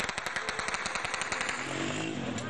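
Automatic gunfire: a rapid string of sharp shots at about ten a second, thinning out near the end.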